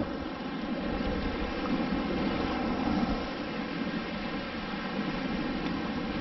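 Steady rushing noise of shallow surf water swirling around the wader and the microphone, with no distinct strikes.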